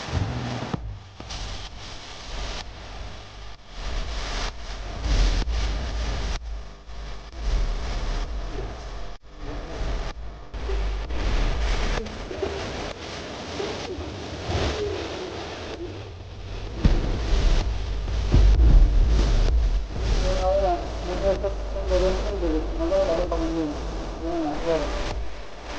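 Wind rumbling and buffeting on the microphone in uneven gusts. Low, wavering voice-like sounds come in over it in the last few seconds.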